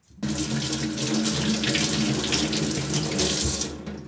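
Kitchen tap running steadily into a stainless steel sink, turned on just after the start and shut off near the end.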